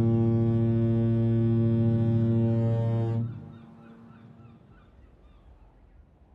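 A navy destroyer's horn sounds one long, steady blast as a warning signal, cutting off about three seconds in.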